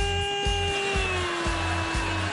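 A camel giving one long, drawn-out call that sets in on a rising note, holds, then sinks slowly, over music with a steady beat.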